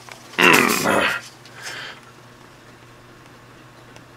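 A short vocal sound, under a second long, about half a second in, followed by a fainter one, over a faint steady low hum.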